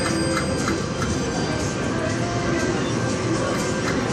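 A King Midas video slot machine playing its free-spin music as the reels spin and stop, with a few light clicks. Casino floor noise and distant voices are underneath.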